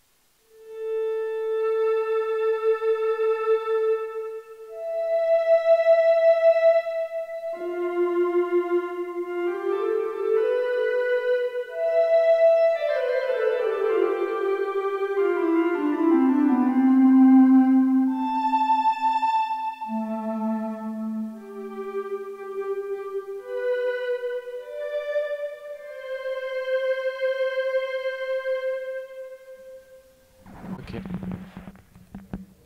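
Ondomo, a modern Ondes Martenot, played from its keyboard: a slow single-line melody of pure electronic tones. The held notes waver with a vibrato made by rocking the keys sideways, and a run of falling notes comes midway. A touch of reverb has been added.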